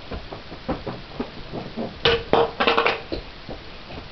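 A string of short knocks and bumps from people moving about. About two seconds in comes a louder, rougher burst lasting about a second, with a held tone running through it.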